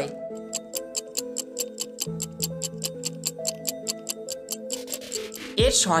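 Clock-like ticking sound effect, about five ticks a second, over steady background music: a quiz countdown timer running while the answer is awaited. A voice comes in near the end.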